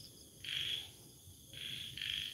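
Night insects chirping in short high trills, one about half a second in and another starting near the end.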